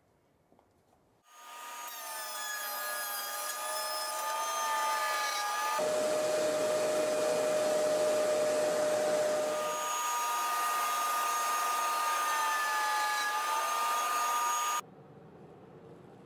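Table-mounted trim router starting up about a second in and running at speed with a high whine. From about six seconds in, a plywood piece is fed into the bit: the pitch drops and a rough cutting sound joins it for about four seconds. The router then runs free again until the sound cuts off suddenly.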